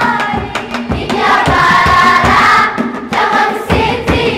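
Children's choir singing together over a steady percussion beat.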